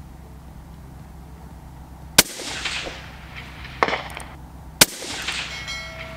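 A single shot from a bolt-action precision rifle about two seconds in, a sharp crack with a trailing echo. A second, similar sharp crack comes about two and a half seconds later.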